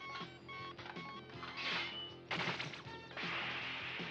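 Cartoon soundtrack music with a quick repeating pulse of short tones. About halfway through, crashing noise effects come in, turning into a sustained rushing crash near the end, as the strange machine goes to work.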